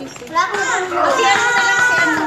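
Children shouting excitedly, several high voices overlapping, rising after a brief lull into a long, held high-pitched squeal.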